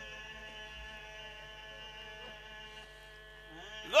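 A faint, steady drone of several held tones, like background music, under a pause in a man's amplified recitation. Near the end his voice comes back in, rising sharply into a loud cry.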